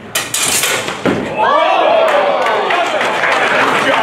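Steel longswords striking in a quick exchange: a handful of sharp metallic clashes in the first second. From about a second and a half in, a loud, drawn-out shout.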